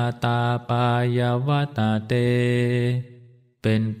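A Buddhist monk chanting a Pali verse in a low, level monotone, each syllable held on nearly one pitch. The line breaks off about three seconds in, and after a short pause he begins the next line in Thai.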